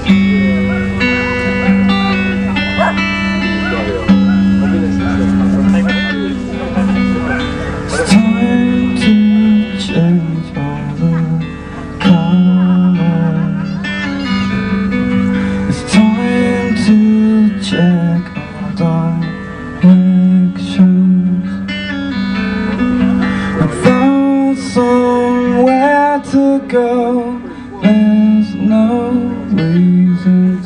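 Acoustic guitar playing a mellow song, with a man's voice singing over it in places.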